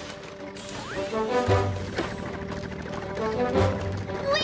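Cartoon background music with a light beat, with a short rising whistle-like sound effect about a second in and a few sharp knocks.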